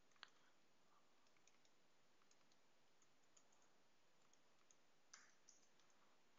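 Near silence broken by a few faint computer mouse clicks, the clearest about a quarter second in and another about five seconds in.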